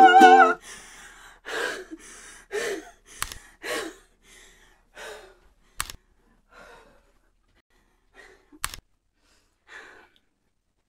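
The last held sung note and ukulele strumming stop about half a second in. After that come a series of heavy breaths and sighs from the singer, winded after the song. The first few are loud and later ones fade, broken by three sharp clicks.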